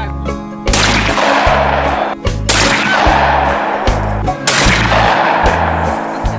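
Shotgun fired three times, about two seconds apart, each blast trailing off in a long echo, over background music with a steady bass line.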